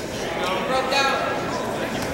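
Voices calling out across a large gymnasium, with the hall's echo; the words are not clear.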